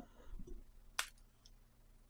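A ball of crumpled paper tossed up and caught: faint rustling, then a single sharp light tap about a second in.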